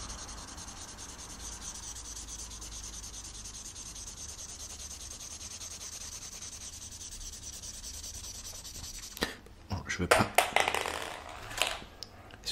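Pencil rubbing steadily across sketchbook paper in continuous back-and-forth strokes, colouring in a drawing. About nine seconds in, it gives way to loud knocks and rustling right at the microphone.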